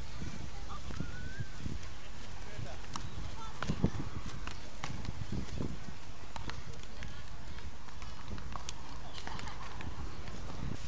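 Footsteps on sand, soft scattered thumps with one sharper knock about four seconds in, over a steady outdoor noise bed, with faint distant voices.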